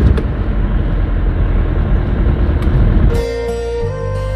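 Car cabin noise while driving: a steady low engine and road rumble. About three seconds in it cuts off abruptly and background music with sustained notes begins.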